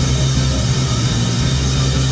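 Live rock band playing loud: distorted electric guitar and drum kit, with a steady low drone underneath and a dense wash of noise over the whole range.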